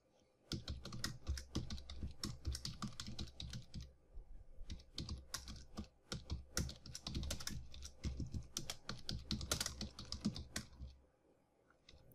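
Typing on a computer keyboard: rapid, irregular keystrokes with a couple of short pauses, stopping about a second before the end.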